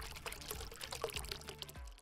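Liquid splashing and pouring sound effect, a dense crackling wash over a low steady tone, fading out near the end.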